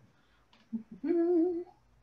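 A woman humming one short, steady "mm", a little under a second long, about a second in, after a couple of faint soft sounds.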